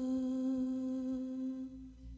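A woman's solo voice holding one long sung note, steady in pitch, with no accompaniment; it fades away near the end.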